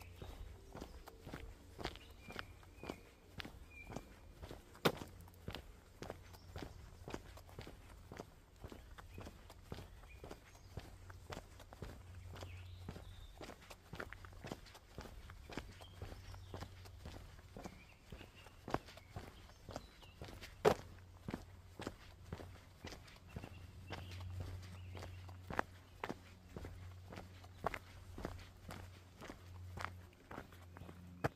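A hiker's footsteps walking steadily along a forest path, about two steps a second, each step a short crunch. A low steady rumble runs underneath.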